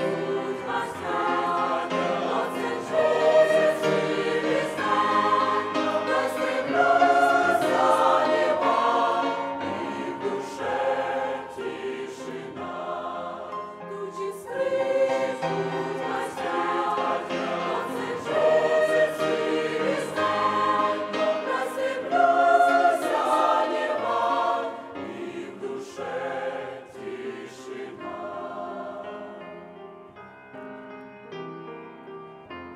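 Mixed choir of women's and men's voices singing a Russian-language hymn in several parts, growing quieter over the last few seconds.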